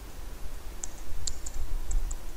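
Computer keyboard keystrokes: about four sharp, irregularly spaced clicks in the second half, over a low rumble.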